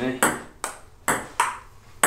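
Table tennis ball being hit back and forth, sharp pocks off paddle and table, about four hits in the two seconds, roughly every half second.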